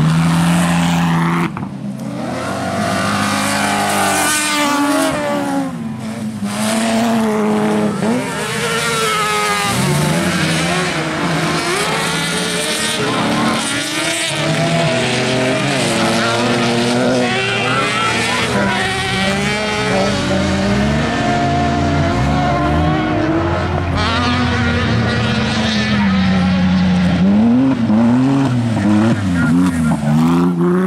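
Several autocross buggy engines racing on a dirt track, their pitch rising and falling over and over as they accelerate, shift and lift for corners.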